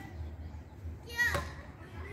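Voices in the open, with one loud high-pitched shout a little over a second in, its pitch falling, over a steady low rumble.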